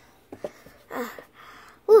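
A child's voice making a delighted "ooh" near the end, after a shorter vocal sound about a second in, with a couple of light clicks in between.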